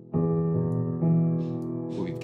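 Sampled Steinway 'Victory' upright piano, a virtual instrument, playing a held G-flat major-seventh chord struck just after the start, with more notes added about a second in and left ringing.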